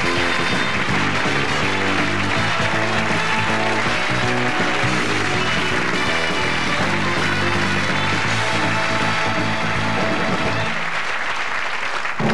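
Closing theme music with a studio audience applauding over it. The music stops shortly before the end while the applause goes on.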